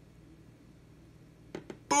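Near silence with faint room tone, broken near the end by two quick clicks just before a man's loud spoken "boom" begins.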